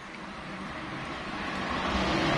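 Noise of a passing motor vehicle, growing steadily louder as it approaches.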